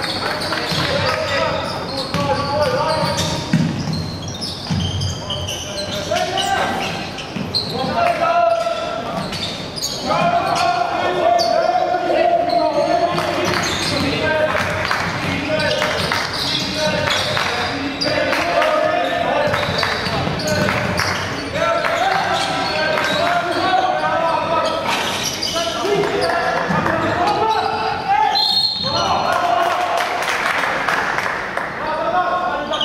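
Live basketball game in a large, echoing hall: the ball bouncing on the hardwood court as players dribble, with shouted voices from players and coaches throughout.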